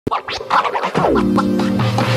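Electronic intro jingle: quick DJ-style scratch sounds, then about a second in a synth note slides down and settles into held notes.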